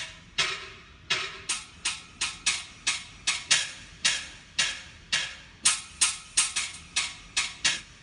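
A sampled hula-sticks sound played from the keys of a Korg Pa1000 arranger keyboard, loaded as a soundfont. It gives about twenty short, sharp, bright strikes, each dying away quickly, in an uneven rhythm that quickens in the second half.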